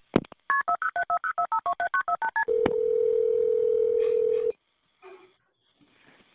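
Playback of a recorded 911 emergency call: a couple of clicks, then a rapid run of touch-tone telephone dialing beeps, followed by a steady tone for about two seconds that cuts off suddenly. The sound is thin and telephone-like.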